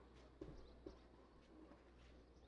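Near silence on an outdoor court, with two faint soft knocks about half a second apart and faint high bird chirps.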